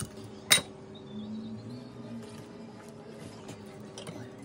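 A carving knife and fork clink sharply once against each other or the board about half a second in, followed by a few faint taps and scrapes as the knife works through the chicken.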